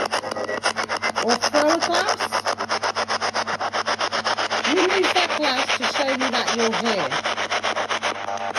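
Spirit box, a radio sweeping rapidly through stations: choppy static pulsing about ten times a second, with brief snatches of voices caught in the sweep, mostly in the first two seconds and again from about five to seven seconds in.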